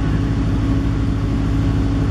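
An engine running at a steady speed: a low, evenly pulsing hum with a steady tone above it.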